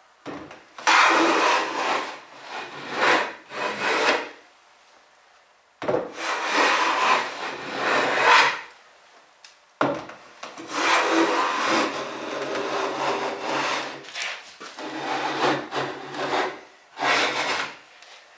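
Hand plane taking shavings off the edge of a wooden board clamped in a vise, squaring the freshly ripped edge: about five long strokes, each a two-to-four-second hiss of the blade cutting, with short pauses between.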